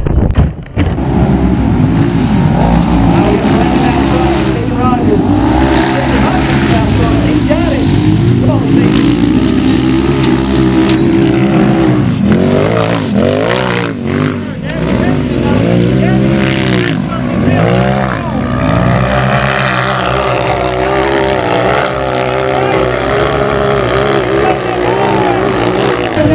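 Side-by-side UTV engines revving hard under load on a steep dirt hill climb, their pitch rising and falling again and again. A few sharp knocks come in the first second.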